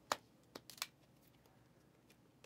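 A stack of 2023 Panini Prizm football cards being handled. There is one sharp tap just after the start, then a few quieter clicks and slides of cards a little over half a second in.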